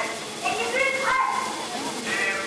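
A person's voice, high and sliding up and down in pitch.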